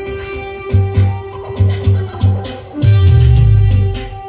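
Live band music played loud through a large speaker stack: a steady held keyboard tone with a plucked melody over it, heavy bass beats coming in under a second in, and a long loud bass note in the last second.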